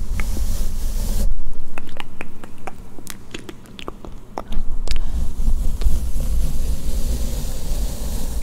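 A makeup brush rubbed and swept across a microphone at close range, giving a loud rumbling scrub with scattered small clicks. The rumble dips around the middle and comes back strongly in the second half.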